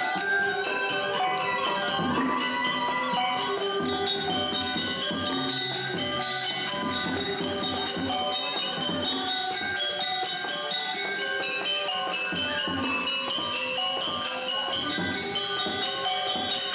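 Live Balinese gamelan playing a dense, continuous melody, with bronze metallophones ringing bell-like over drums.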